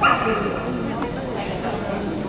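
A dog gives one short, loud bark or yip at the start, over the murmur of people talking in a large hall.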